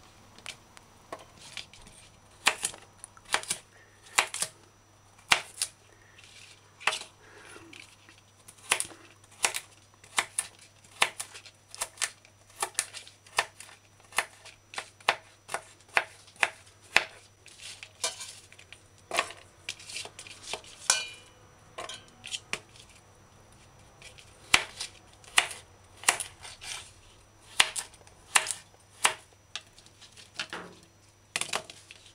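Kitchen knife dicing hard coconut meat on a plastic cutting board: irregular sharp knocks of the blade striking the board, one to three a second with a few short pauses.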